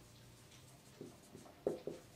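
Marker writing on a whiteboard: faint, with a few short strokes in the second half, the clearest about one and a half seconds in.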